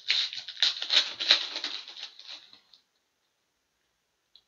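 Foil wrapper of a Synergy hockey card pack crinkling and tearing as it is ripped open and the cards are pulled out: a dense, papery crackle that stops a little under three seconds in.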